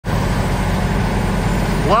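Morbark tub grinder running and grinding mulch: a loud, steady heavy diesel drone with a dense rumble of grinding underneath.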